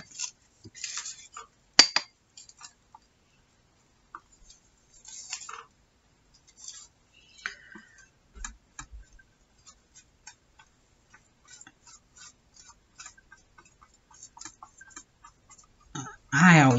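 Quiet crafting handling noise: soft rustles and scattered small taps and clicks as hands smooth glued tissue paper onto a journal cover, with one sharp clink about two seconds in.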